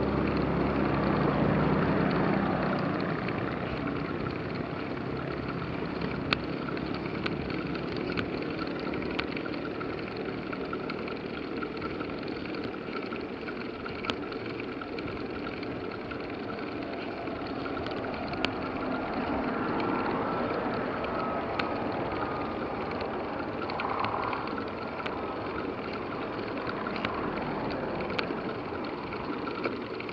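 Steady wind and road rumble picked up by a camera mounted on a bicycle's handlebar while riding uphill, with a few sharp small clicks and rattles from the bike. The low rumble is louder for the first couple of seconds, then settles.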